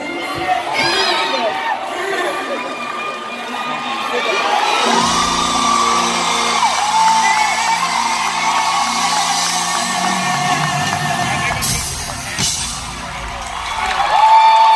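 Female R&B singer singing live, with wavering held notes over a sustained low chord from the band that comes in about five seconds in, while the crowd whoops and cheers.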